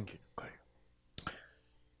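A pause in a man's talk, picked up on a headset microphone: the last word trails off, a faint short mouth sound comes about half a second in, and a single short click follows a little over a second in, over faint room hum.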